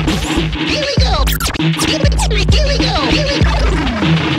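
Turntable scratching over a hip-hop beat: a record sample dragged back and forth by hand, its pitch sliding up and down in quick strokes, over heavy bass drums.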